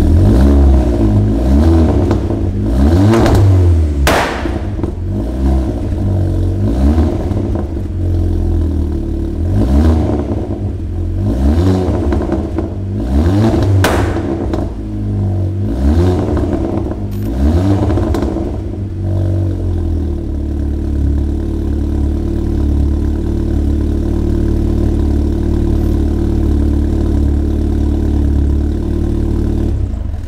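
Golf Mk6 GTI's turbocharged four-cylinder through a new BullX exhaust, blipped repeatedly with sharp pops and cracks as the revs drop, then settling into a steady idle for about the last ten seconds.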